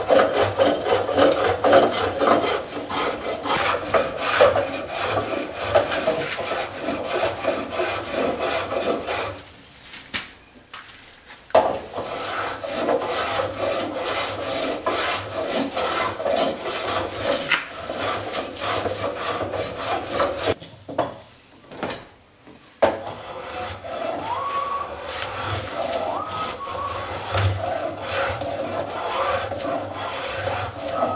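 Block plane shaving a beech barley-twist table leg in quick, repeated strokes, each a short scrape of the blade across the wood. The strokes stop briefly twice, around ten seconds in and again just past twenty seconds.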